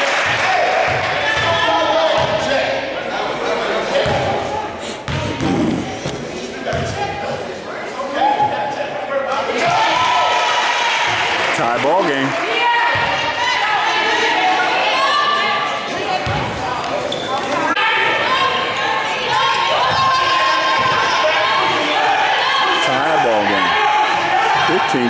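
A basketball bouncing on a hardwood gym floor during free throws, heard under many voices talking and calling out around the court.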